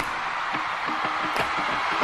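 Live concert sound in a lull of the music: a steady wash of audience noise, with only brief snatches of the band.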